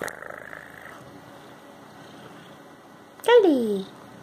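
A cat purring steadily, then about three seconds in giving one loud, short meow that falls in pitch. A brief rustle comes at the start.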